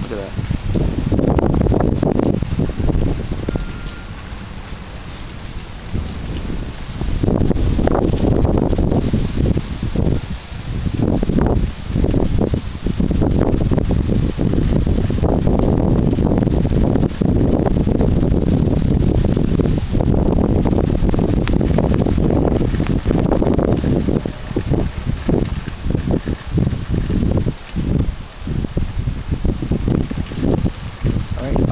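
Gusty wind buffeting the microphone outdoors under a passing thunderstorm: a loud, uneven rumble that rises and falls with the gusts and eases for a couple of seconds about four seconds in.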